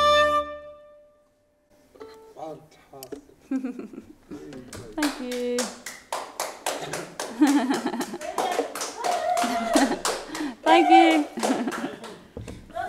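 The last held chord of a fiddle, flute and keyboard tune rings out and stops within the first second. After a brief hush, a few people clap irregularly while voices talk and laugh.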